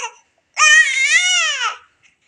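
Infant giving one long, high-pitched, cross cry that starts about half a second in and rises and falls slightly in pitch, after the tail of a shorter cry at the very start. The baby is angry.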